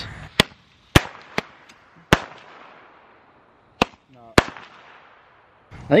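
A handheld Roman candle firing: about six sharp pops, four in the first two and a half seconds over a fading hiss of burning, then two more close together near the four-second mark.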